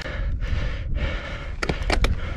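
Mountain biker breathing hard in heavy gasps while pedalling up a steep, rocky climb, over a steady low rumble, with two sharp knocks near the end.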